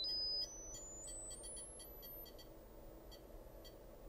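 A sine-wave test tone plays through the KLH Model Eight speaker cabinet's small full-range drivers. It steps up in pitch several times a second to a very high, faint whistle at about 15 kilohertz, around the limit of hearing, and holds there to the end. The tone drops in loudness about half a second in and grows fainter as it climbs.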